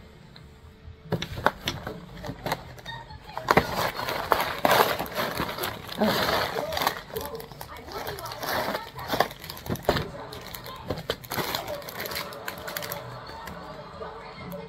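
Clear plastic packaging of a tray of biscuits being handled, crinkling and crackling irregularly with sharp clicks and taps.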